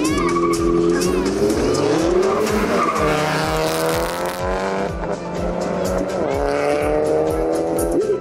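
An Audi S3 and a Škoda Octavia launching side by side from a drag-racing start line: engines revving hard, the note rising over the first three seconds, dropping at a gear change and rising again, with tyre squeal. Background music plays underneath.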